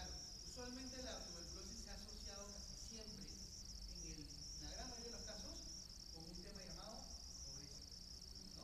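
Faint, distant speech of a lecturer heard across a large hall, under a steady high-pitched whine.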